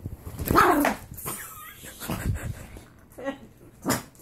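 Small terrier-type dog vocalizing, with a loud bark-like sound about half a second in and a few shorter, quieter noises after it. This is a grumpy dog guarding its owner on the bed.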